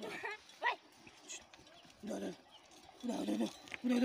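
Short calls from farm animals: a quick rising call near the start, then three brief pitched calls about two, three and four seconds in.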